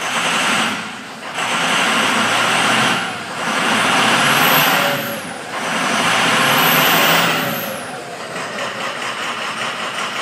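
Ford 6.0L Power Stroke turbo V8 diesel revved four times in quick succession, the turbo whine rising and falling with the last two revs, then dropping back to a rough idle. The engine is misfiring on several cylinders from air in the high-pressure oil rail, and the revs are meant to purge it.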